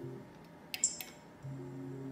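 Slot machine's low spinning melody breaks off, then two sharp clicks come a quarter second apart near the middle, and the tune starts again as the next free spin begins.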